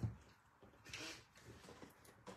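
A brief knock at the start, then faint handling and rustling as a handheld plastic paper punch is fitted over the edge of a small card box.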